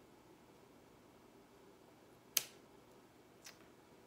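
A single sharp snip of scissors cutting through an artificial greenery stem a little past halfway, followed by a much fainter click about a second later, over quiet room tone.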